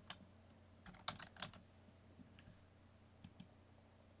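Faint keystrokes on a computer keyboard: a few scattered taps, a small cluster about a second in and two more near the end.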